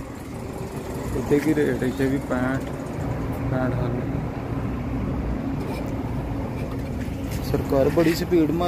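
Diesel pump running while a truck's fuel tank is filled, a steady low hum.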